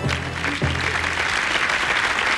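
Studio audience applauding, with the tail of the show's music fading out beneath it in the first half.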